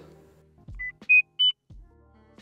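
Three short electronic beeps, each higher in pitch than the last, a chapter-transition sound effect over quiet background music.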